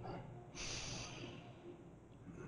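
A man breathing out audibly: a faint breath starts about half a second in and fades away over about a second.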